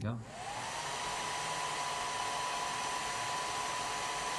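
Revlon hair dryer switched on: its motor whine rises over the first half second, then holds steady over the rush of the air.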